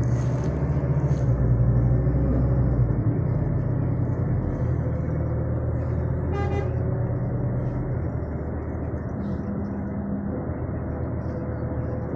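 Steady low engine and road rumble inside a moving bus, easing off somewhat past the middle. A brief horn toot sounds once about six and a half seconds in.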